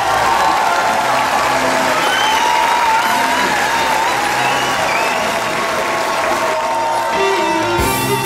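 Large audience applauding and cheering over a music bed. Near the end a band with electric guitars starts playing.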